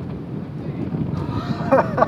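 Wind rumbling on the microphone, with a person's voice starting in the second half.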